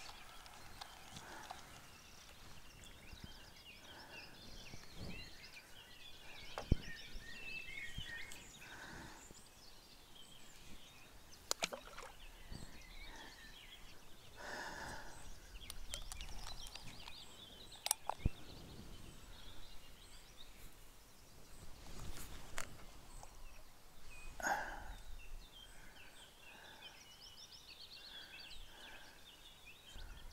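Quiet open-air riverbank ambience with birds chirping and calling on and off, and a few sharp clicks here and there.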